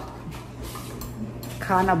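Light clatter of dishes and cutlery being handled at a kitchen dish rack, over a steady low hum.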